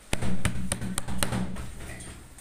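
A quick run of sharp knocks, about five in a second and a half, over a low rumble, then fading.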